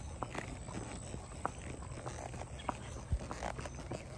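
Palomino horse's hooves clopping on a paved road in an uneven rhythm, over a steady low rumble, with one louder thump about three seconds in.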